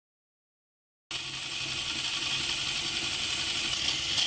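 Ducati Scrambler 800's air-cooled L-twin engine running at idle, cutting in suddenly about a second in, with a fast mechanical ticking clatter over its steady note.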